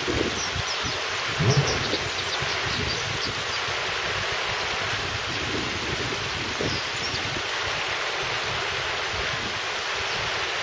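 Shallow river water rushing over flat rocks, a steady, even hiss. A few faint high chirps sound in the first couple of seconds, and there is a brief low thump about a second and a half in.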